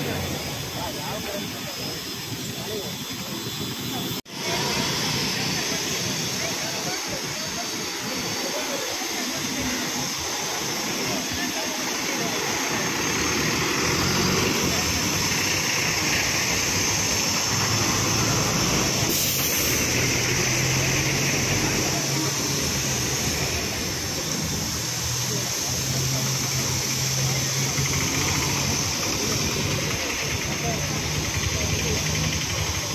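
Busy road traffic: scooter, motorcycle and bus engines running and passing in a steady noisy wash, with people's voices talking over it. The sound drops out briefly about four seconds in.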